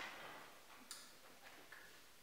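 Near silence: room tone with a few faint clicks, the sharpest about a second in.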